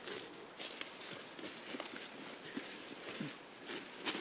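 Faint rustling with scattered small crackles as a person crawls over dry leaf litter under a low tarp and lies down.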